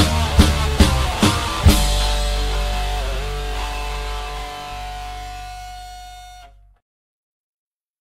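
Hardcore punk band ending a song: four last hits on the drums and guitar, then a final guitar chord left ringing and slowly fading, cut off abruptly about six and a half seconds in.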